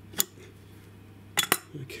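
Steel spanners and a nut clinking together metal-on-metal: one sharp clink, then a quick cluster of two or three clinks about a second and a half in.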